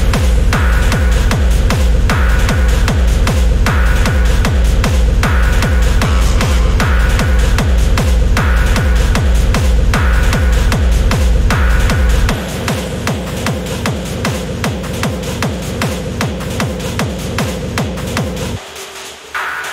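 Dark techno from a DJ mix: a steady four-on-the-floor kick drum, about two beats a second, drives a repetitive, dark groove under a held synth drone. About twelve seconds in, the kick drops out and the music carries on more quietly without it.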